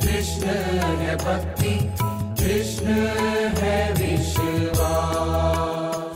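Hindu devotional music: voices chanting a mantra over a steady low drone, with percussion strikes.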